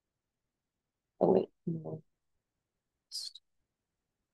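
A person's voice making a short two-part voiced sound, like a murmured "mm-hmm", about a second in, on an otherwise silent call line. Near the end comes a brief high hiss, like a breath or a sibilant.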